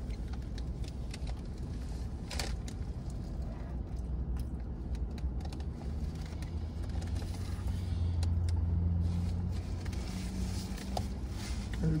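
Steady low rumble inside a car cabin, which swells for about two seconds past the middle, with scattered crinkling and rustling of paper and plastic food wrappers and containers being handled.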